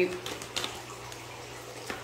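A deck of cards being handled in the hand, giving a few faint, short clicks over a steady low hum.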